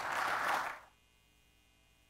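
Audience applause that cuts off abruptly under a second in, leaving only a faint steady electrical hum.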